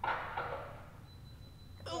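A pause in conversation: faint voices at the start, then quiet room tone with a thin high whine, and a man starts speaking again right at the end.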